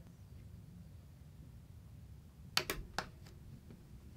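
Faint room tone, then a quick cluster of sharp clicks about two and a half seconds in, typical of switches or buttons being pressed as the power pack is turned on and the timer started.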